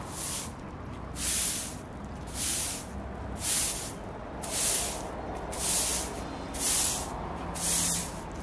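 A stiff broom sweeping grit off an asphalt road, one scraping, hissing stroke about every second, eight strokes in a steady rhythm.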